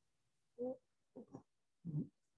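A dog barking faintly: a few short barks, the first about half a second in, then two close together, and one more near the end.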